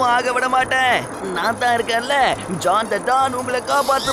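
Animated cartoon characters' voices shouting, over a steady low hum.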